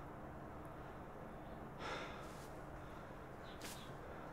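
Quiet background with a person's soft breath: an exhale about two seconds in, and a short, sharper breath near the end.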